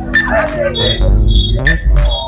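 Organ-style music played over a public-address system, held chords with heavy bass, with crowd voices over it and a few short high whistle tones about a second in.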